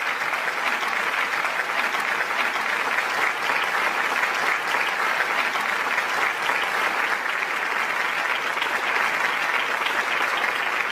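Sustained applause: many hands clapping steadily.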